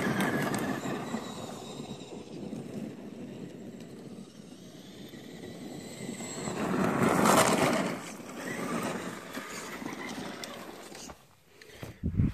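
Traxxas E-Maxx electric RC monster truck driving over gravel and dirt: motor whine and tyre crunch. It swells and fades as the truck moves about, is loudest about seven seconds in, and dies away near the end.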